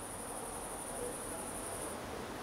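Crickets chirping: a steady, faint, high-pitched trill that drops away near the end.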